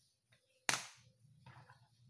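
A single sharp click of a coloured pencil being put down on a wooden table as it is swapped for another, followed by faint handling rustles.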